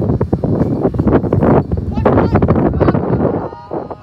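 Wind rumbling on a phone microphone, with close handling rustles and knocks and indistinct voices on a sports field.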